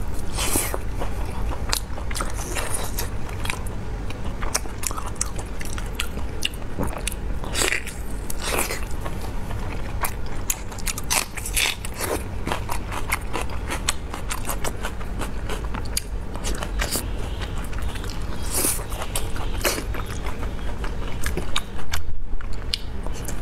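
Close-miked biting and wet chewing of braised pork large intestine: a run of irregular soft, sticky mouth clicks and smacks, with a few louder wet bites.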